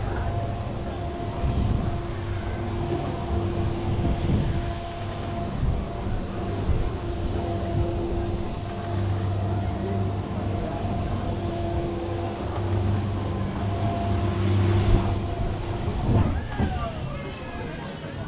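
Spinning balloon-gondola ride in motion: a low mechanical hum that cuts in and out every few seconds over a rushing haze, with voices around, and a falling whine near the end.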